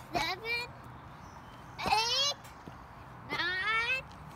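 A young child's high-pitched voice: three short wordless calls about a second and a half apart, each sliding up in pitch at the end.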